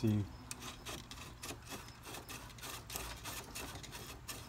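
Light irregular clicks and rubbing from a car power antenna assembly handled by hand: its mast and gear mechanism being moved on a wooden bench.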